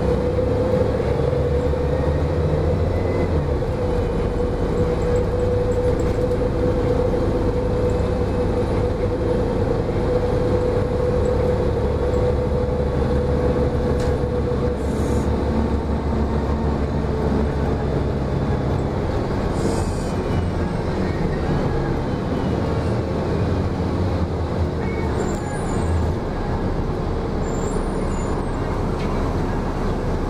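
Cabin noise aboard a 2004 Gillig Low Floor 30-foot transit bus at road speed: a steady engine drone and road rumble with a steady whine over it.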